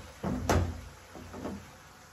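A single sharp knock of a utensil or cookware being handled at the stove, about half a second in, followed by a few fainter handling sounds.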